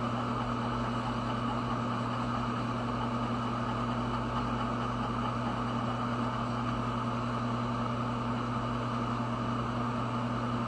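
Steady machine hum with a low drone and a higher whine, unchanging throughout.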